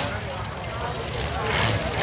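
Demolition derby truck engines running at a steady low rumble, mixed with the noise of a grandstand crowd.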